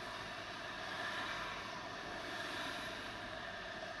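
Steady low background hum inside a car cabin, even throughout with no distinct events.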